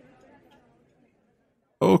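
A faint background fades out over about a second, then complete silence, then a man's voice starts speaking just before the end.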